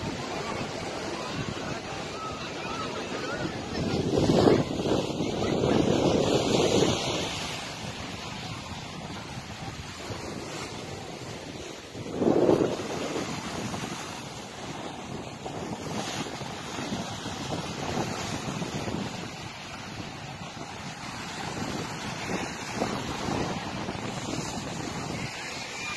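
Sea waves washing against a rocky shore, with wind buffeting the microphone; the surf swells louder about four to seven seconds in and again about twelve seconds in.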